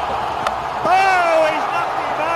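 A single sharp crack of a cricket bat striking the ball about half a second in, followed by a man's long raised shout.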